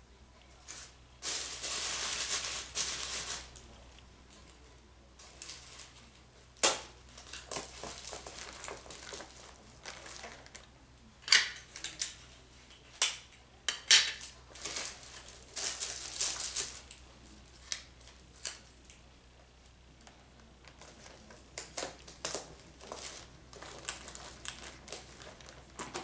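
Handling transparent tape and packaged items while building a gift basket: two rustling, tearing stretches of about two seconds each, with a scatter of sharp clicks and taps between them.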